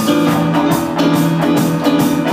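A live rock band playing loudly: electronic keyboard, bass guitar and drums, with electric guitar, recorded on an iPad.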